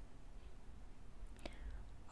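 Faint room tone: a low hum and light microphone hiss, with one faint brief click about one and a half seconds in.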